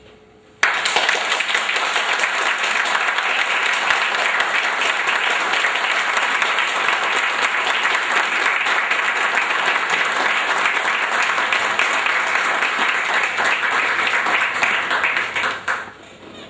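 Sustained applause from a roomful of seated people clapping. It starts suddenly about half a second in, holds steady and dense, and fades near the end.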